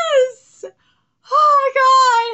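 A woman's high-pitched squeals of excitement, without words: one long falling squeal that ends shortly after the start, then a second held squeal from just past the middle.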